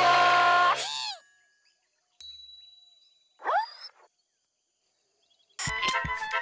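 Cartoon sound effects: a held, pitched shout that slides down and stops about a second in, then a single bright metallic ding that rings out, and a short swooping squeal. Music comes in near the end.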